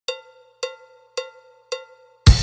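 Four evenly spaced cowbell strikes, about two a second, each ringing briefly: a count-in opening the background music.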